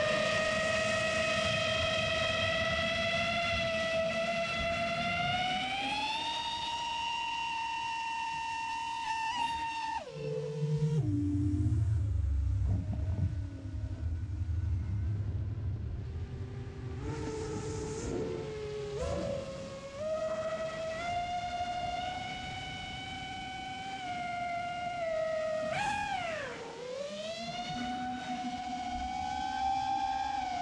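Brushless motors and propellers of a 7-inch long-range FPV quadcopter whining, the pitch rising and falling with throttle. About ten seconds in the whine drops sharply to a low rumble, with GPS Rescue flying the quad, then climbs again around twenty seconds, with a quick dip and rise near the end.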